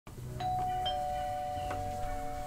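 Two-tone doorbell chime: a higher 'ding' about half a second in, then a lower 'dong', both notes ringing on.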